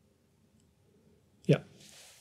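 Near-silent room tone, then about one and a half seconds in a sharp click and a man saying "ja", followed by a soft breathy hiss.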